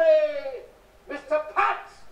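A man's theatrical announcing voice: a long drawn-out vowel falling in pitch, then after a short pause a few clipped syllables.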